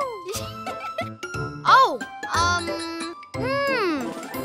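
Light tinkling children's cartoon background music, with two short cartoon-voice exclamations that rise and fall in pitch, one near the middle and one near the end.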